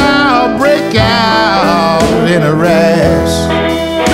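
Blues band recording playing, with a lead line bending up and down in pitch over a steady band backing.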